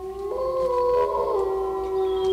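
A dog howling: one long drawn-out howl that rises in pitch at its start and then holds steady.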